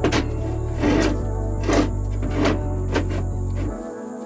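Background music with a bass line and a steady drum beat; the bass drops out just before the end.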